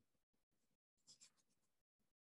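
Near silence: room tone, with a brief cluster of faint clicks about a second in from computer controls being worked to change the slide.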